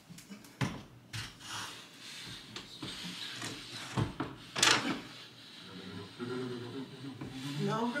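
Knocks and a scraping rush as a tall floor mirror's frame is handled and shifted against the wall; the longest and loudest scrape comes a little past halfway. A voice is heard near the end.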